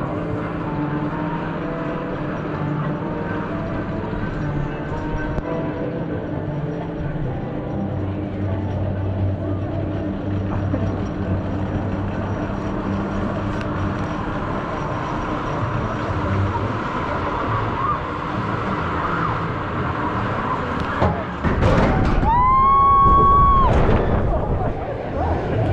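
Drop-tower ride climbing slowly, with a steady low hum and distant background sound. About 21 seconds in the gondola drops: a sudden rush of wind noise and a long, high rider's scream for about a second and a half.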